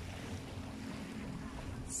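Wind blowing on the microphone over the calm sea at the shore, a steady rushing noise, with a faint steady low hum underneath.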